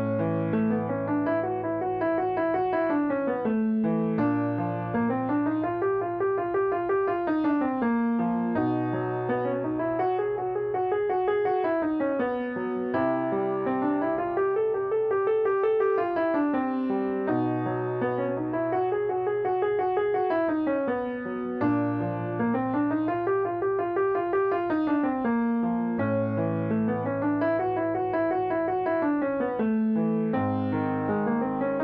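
Piano accompaniment for a vocal agility exercise: quick stepwise runs that climb and descend over about four seconds each, repeated about seven times, each over a held bass note. The pattern is moved to a new key with each repetition.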